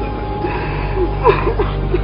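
A man's short gasping, whimpering vocal sounds, a few brief breaths with a catch in them in the second half, with music coming in underneath about halfway.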